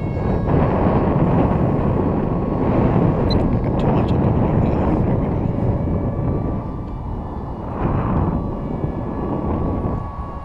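Heavy wind buffeting the microphone, with the faint steady whine of a small electric motor on a foam RC park jet flying overhead.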